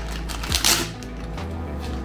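Clear plastic packaging crinkling and tearing as it is pulled open by hand, in a few short rustling bursts, over quiet background music.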